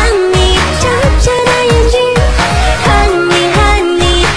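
Asian pop backing track playing its intro: a smooth held melody line over a steady beat of deep drum hits that drop in pitch.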